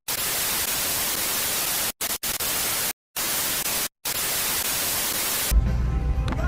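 TV-static hiss sound effect under an intro title card, cut by short silent dropouts four times. Music with a heavy bass line comes in about five and a half seconds in.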